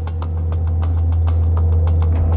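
A loud, steady low drone with rapid, evenly spaced ticks over it.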